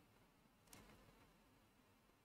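Near silence: faint room tone, with one faint click just under a second in.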